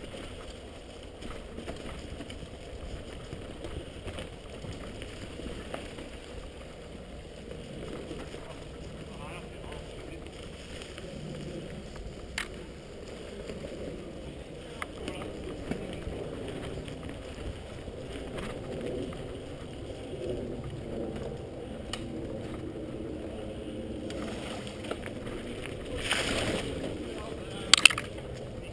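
Wind on the microphone and the rattle and rumble of a mountain bike ridden fast over a rough, stony forest trail, with scattered sharp knocks from bumps. The knocks are loudest near the end.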